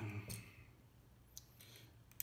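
A few light clicks of plastic VEX IQ building-toy parts being handled, the loudest in the first half-second and one more a little past the middle.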